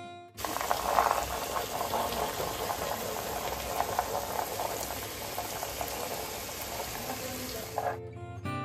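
Wet onion-garlic masala and whisked curd sizzling and bubbling in an open pot as it is fried, with a spatula stirring through it. This is the bhuna stage, with the masala kept moving so the curd does not split.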